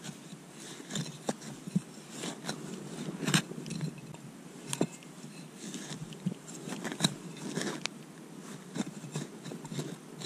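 A serrated steel hand digger cutting and scraping into turf and soil, with irregular sharp crunches as it slices through roots and earth.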